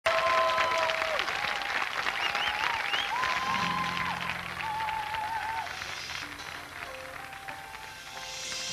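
Audience applause over the instrumental introduction of a song. The clapping is loudest at the start and dies away by about six seconds in. Low bass notes come in about three and a half seconds in.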